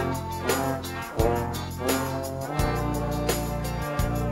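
A children's brass group, three trumpets and a larger upright-belled horn, playing a tune in phrases over an accompaniment with steady, sustained low bass notes, with short breaks between phrases near the start and about two and a half seconds in.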